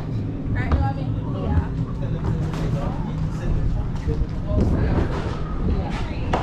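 Indistinct background chatter of several people over a steady low rumble.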